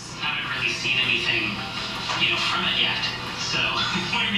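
A television playing in the background: a voice over music.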